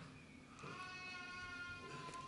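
A faint, high-pitched, voice-like call held steady for about a second, starting about half a second in.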